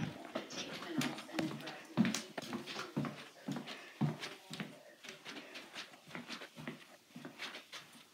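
Footsteps on a wooden floor and the rub and knock of a handheld phone being carried, a short thud about every half second, getting quieter towards the end.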